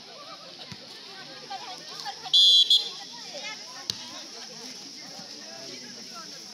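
A referee's whistle gives one short, shrill blast about two and a half seconds in, then a brief second toot, over the steady chatter of spectators at the volleyball court. A single sharp knock follows about a second later.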